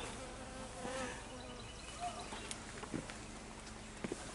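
Faint, steady buzz of a flying insect close to the microphone, over a quiet outdoor background with a few soft clicks.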